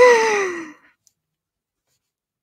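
A woman's voiced sigh: one falling breathy tone that starts high and slides down, dying away in under a second.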